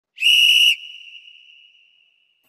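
A single high, steady whistle tone opening the song: held loud for about half a second, then falling away and fading out over the next second and a half.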